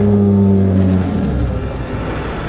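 A loud, low, steady drone in the film soundtrack, with clear overtones, loudest at first and fading out about a second and a half in.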